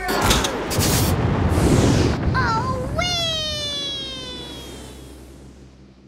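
Cartoon take-off sound effect: sharp bangs and a loud rushing whoosh. About three seconds in comes a long pitched tone that falls slowly and fades away as the flyer streaks off.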